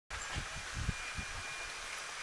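Steady hum and hiss of an airport terminal check-in hall, with a few soft low thumps as the camera is carried forward.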